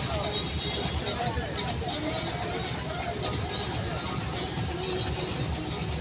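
Boat engine running steadily underway, a continuous low rumble, with people's voices talking over it.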